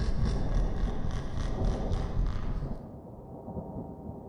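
Thunder sound effect: a deep rumble under sharp crackling that breaks off about three seconds in, leaving the rumble to fade.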